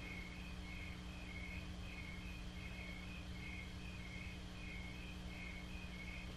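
Faint insect chirping, a short high chirp repeated about twice a second, over a low steady hum.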